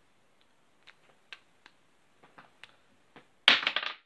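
A coin handled between the fingers for a flip, giving a few faint clicks, then a louder short clatter of rapid clicks and rustle about three and a half seconds in.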